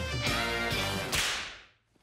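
Short cartoon music sting on a held chord, cut off about a second in by a sharp whip-crack swish sound effect that fades away.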